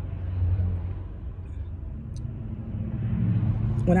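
Inside a moving car's cabin: steady low engine and road rumble, with a steady hum joining about halfway and the noise growing a little louder near the end.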